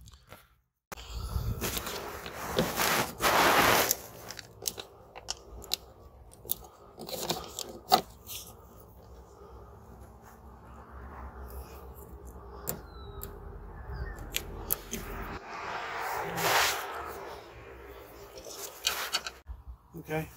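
Hands working a mirror wiring harness and its rubber grommet through a car's door frame: rustling, crackling and scattered sharp clicks of plastic and rubber. It starts about a second in and is loudest in patches early and near the end.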